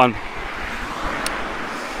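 Road traffic passing close by: a car and then a van driving past with a steady rush of tyre and engine noise.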